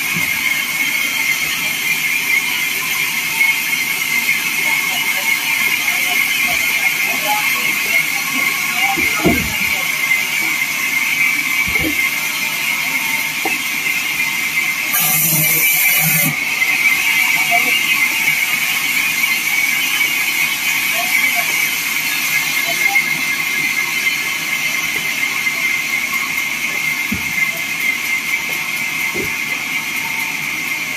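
Vertical bandsaw mill running with a steady high whine and hiss as a wooden slab is fed through the blade, with occasional knocks of timber being handled and a brief louder hiss about halfway through.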